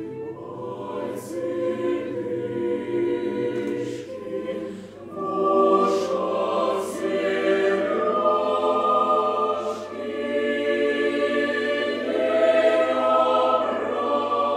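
Mixed chamber choir singing a cappella in sustained chords, dipping briefly about four and a half seconds in and then swelling louder, with sung consonants audible.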